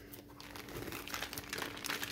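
Clear plastic bag wrapping crinkling in irregular crackles as a packaged part is handled and lifted out, growing a little louder toward the end.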